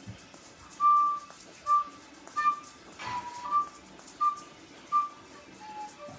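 A person whistling a short tune: clear single notes, mostly on one pitch, with a couple of lower notes in between and near the end.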